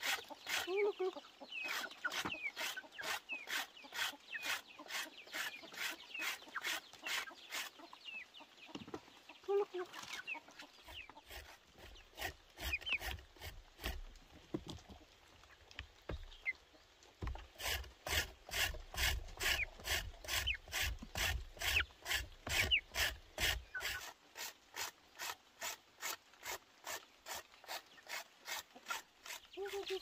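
Root being rubbed on a handheld grater: rhythmic scraping strokes, about three a second, which pause for several seconds in the middle and then resume. Chickens cluck over the grating.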